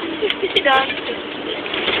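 A brief high-pitched vocal sound from one of the kids about three quarters of a second in, over the steady running noise of a bus, with a couple of small clicks.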